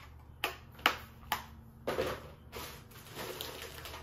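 Objects being picked up, handled and set down on a desk: four sharp knocks in the first two seconds, then rustling and clatter.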